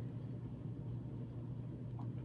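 Quiet room tone: a steady low hum with a faint even hiss, nothing else happening.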